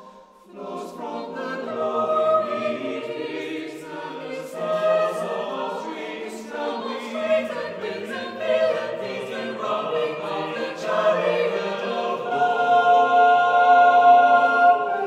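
Choir singing a cappella in long, swelling phrases. The voices pause briefly and come back in under a second in, growing fullest near the end.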